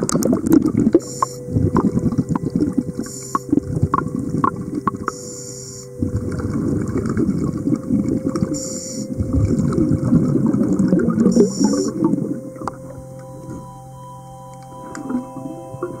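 Scuba diver breathing through a regulator underwater: five short hissing inhalations a couple of seconds apart, between long bubbling exhalations, over a steady low hum.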